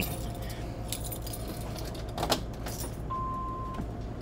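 Keys jangling and clicking in a motorhome's ignition as the key is turned to the on position, then a single short steady electronic beep near the end. A low steady hum runs underneath, the RV's generator still running.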